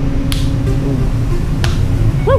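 Two sharp hand slaps from high fives, about a second and a half apart.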